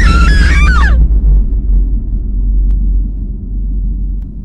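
Horror-trailer sound effects: a shrill, screeching cry that breaks and slides down in pitch in the first second, followed by a deep, steady low rumble.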